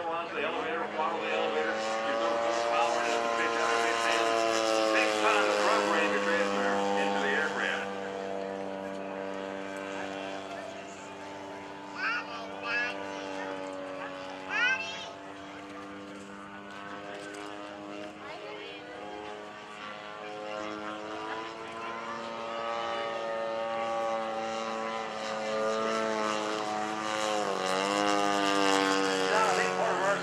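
Radio-controlled scale Pitts Model 12 biplane's DA-100 two-stroke gasoline engine and propeller running through aerobatics, a steady droning note that grows louder and fainter as the plane passes and shifts pitch with the throttle, dipping and recovering near the end.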